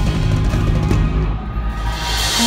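Live band music through a concert sound system, loud and dense with a heavy low end from drums and bass. The top end thins out briefly near the end.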